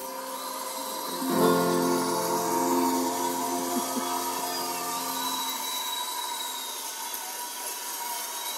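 Acoustic guitar: a closing chord strummed about a second in rings out for about four seconds and is then cut off, leaving a steady hiss.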